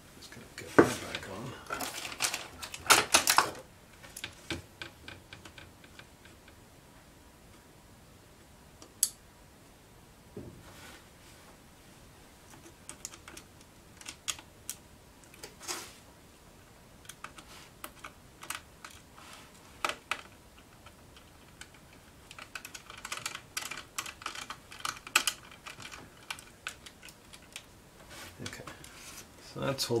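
Scattered small clicks and taps of a screwdriver driving the screws that hold a laptop motherboard in place. The clicks come in dense clusters near the start and again about three-quarters of the way through, with sparse single ticks between.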